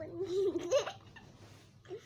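A short wordless laugh-like vocal sound lasting under a second, with a couple of light clicks, then fading to quiet.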